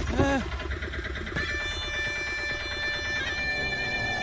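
A short, wavering vocal cry right at the start, then a film score of sustained high notes comes in about a second and a half in and holds.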